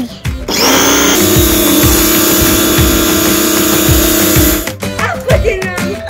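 Small electric pressure washer switched on about half a second in: its motor and pump run with a steady hum over a loud hiss for about four seconds, then stop abruptly. Background music with a beat plays throughout.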